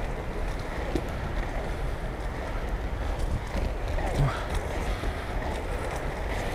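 Inline skate wheels rolling steadily over smooth paving, with wind noise on the microphone from the skater's speed.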